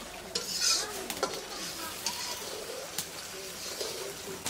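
Long metal spatula stirring and scraping curry in an iron wok, with a few sharp knocks of metal against the pan, over the low sizzle of the simmering sauce.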